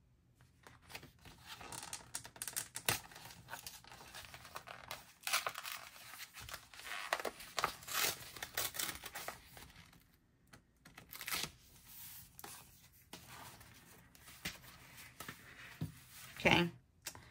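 A sheet of patterned paper from a sticker book torn by hand in a series of short, irregular rips, with the paper crinkling as it is handled between rips.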